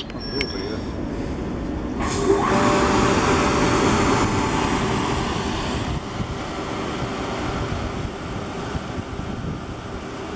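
Southern Class 377 electric multiple unit pulling into the platform. The rumble of its wheels and running gear swells sharply about two seconds in as the carriages pass close by, then eases after about six seconds.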